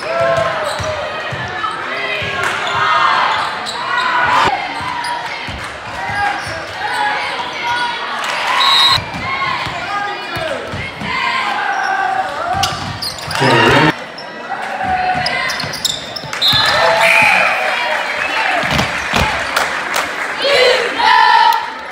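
Basketball game sound in a school gym: a ball bouncing on the hardwood court and shoe and play knocks under continuous crowd and player voices and shouts.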